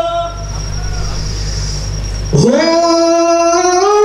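A young male qasidah singer's solo voice, amplified through the stage PA. After about two seconds of low hum, he slides up into a long held note and steps it higher near the end, in the free, drawn-out style of a mawal.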